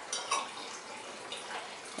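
Steady hiss of room noise with a few faint, light clicks near the start and once more past the middle, a table knife touching a ceramic plate as frosting trees are lifted off it.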